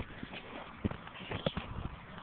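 Irregular soft thumps and clicks, with two louder knocks a little under a second in and again about half a second later.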